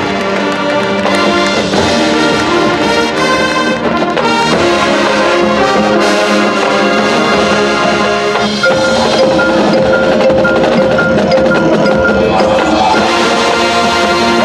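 Marching band playing: brass over front-ensemble mallet percussion (marimba and xylophone) and drums. About two-thirds through, a long held note comes in under a short, repeated higher figure.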